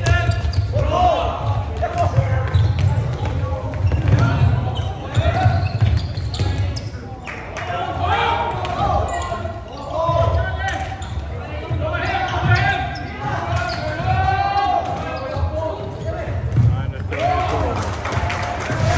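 Floorball players shouting calls to each other, echoing in a large sports hall, over frequent low thuds from play on the court floor.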